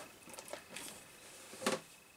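Faint handling noises of an RC car chassis being lifted and set down on another: soft rustle and a few light plastic clicks, with a sharper knock near the end.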